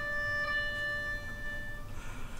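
Melodica holding one long sustained note that fades away shortly before the end.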